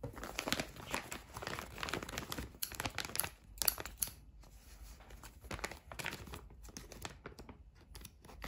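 A plastic bag of potting soil crinkling as it is handled and turned, with scissors cutting into its top near the end: an irregular run of sharp crackles.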